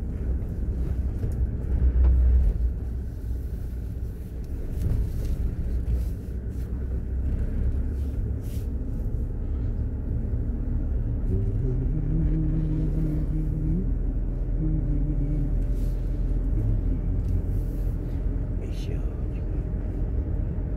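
Low rumble of a car's engine and tyres, heard from inside the cabin while driving slowly along a narrow paved road. It swells briefly about two seconds in. Midway, a low humming tone holds at a few steady pitches for several seconds and then fades.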